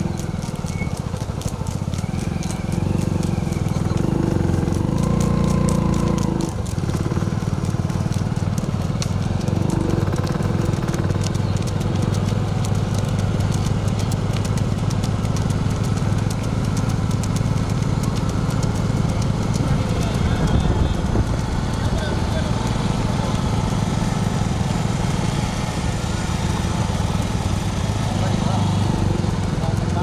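Motorcycle engines running steadily as the bikes ride along, with wind rushing over the microphone.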